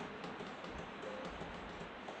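Quiet classroom room tone: a steady low hiss with faint, scattered small ticks and taps, like pens on paper and desks while students write down dictated notes.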